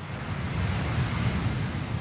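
Jet airliner flying low on its landing approach: a steady rushing rumble from its engines.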